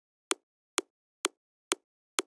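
A soloed top-kick layer, the short click of an electronic kick drum with its low end cut away, playing four-on-the-floor at 128 BPM: evenly spaced dry ticks about two a second.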